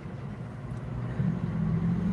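A low, steady hum of a few held tones that comes in about a second in and stays even to the end.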